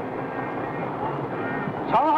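A steady, noisy engine drone.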